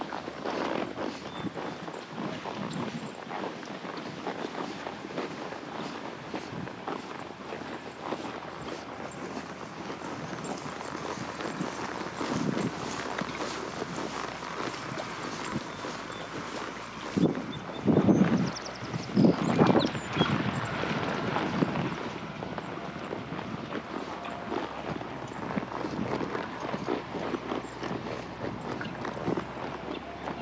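Horse moving through tall grass: muffled hoofbeats and grass swishing against its legs, with a few louder thumps a little past halfway.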